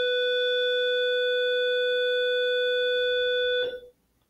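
A long, steady electronic tone at one pitch that stops abruptly near the end.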